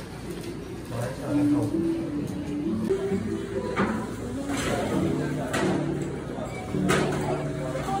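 Soft background music with held notes, under people's voices.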